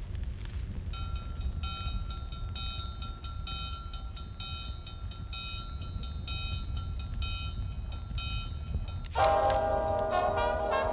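A low rumble under a steady high tone and a rhythmic pattern of pulsing electronic beeps, a few per second. Brass-led jazz music comes in about nine seconds in, louder.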